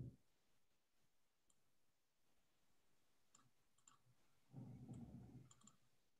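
Near silence, with a few faint, scattered clicks and a brief faint low murmur about four and a half seconds in.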